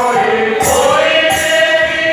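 Devotional group singing with long held, gliding notes, over a jingling percussion beat about once a second.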